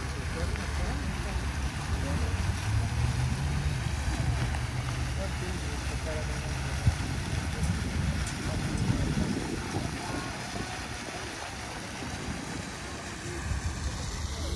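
Open-air ambience of people passing: indistinct voices of passers-by over a steady low wind rumble on the microphone, with a single sharp click about seven seconds in.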